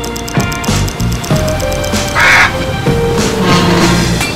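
Upbeat background music with a single short parrot squawk sound effect a little over two seconds in.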